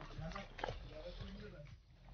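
Faint voices of people calling out and shouting during an outdoor game, with no clear words.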